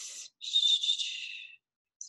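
A short airy hiss, then a breathy whistle-like hiss about a second long.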